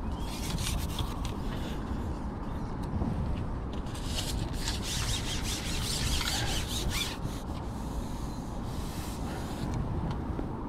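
Carbon fishing pole being shipped out over the water, its sections sliding and rubbing as they are pushed out, in a series of scraping rasps that ease off about seven seconds in.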